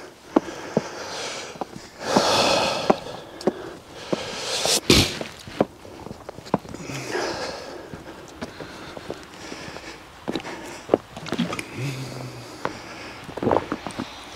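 Footsteps crunching in snow at an uneven pace, with sniffs and breaths. A short, loud rustle about five seconds in, and a brief low hum near the end.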